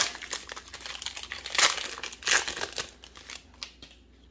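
A Magic: The Gathering booster pack's foil wrapper crinkling as it is opened by hand, a run of sharp crackles that is loudest about a second and a half in and again just past two seconds, then dies away near the end.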